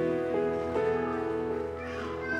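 Live worship band playing softly between songs: sustained chords with single plucked guitar notes coming in about a third of a second and three-quarters of a second in.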